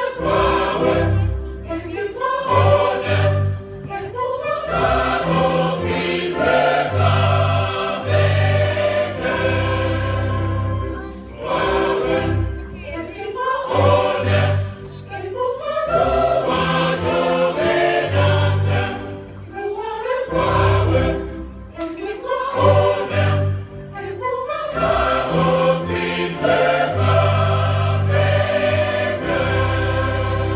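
A large church choir singing a hymn in harmony, accompanied by violins and keyboard, with held low bass notes under the voices. The music phrases rise and fall, with short breaths between lines.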